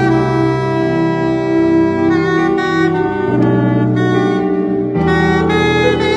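Saxophone playing a slow worship-song melody in long held notes over keyboard accompaniment, badly out of tune.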